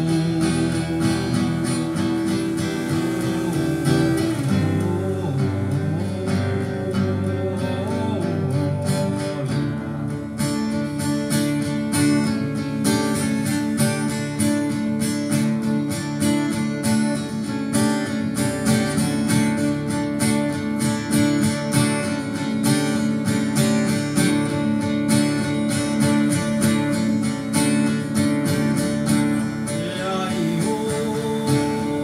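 Two acoustic guitars played together, strummed in a steady, even rhythm.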